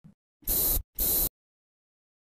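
Aerosol spray can sound effect: two short bursts of hissing spray in quick succession, each under half a second.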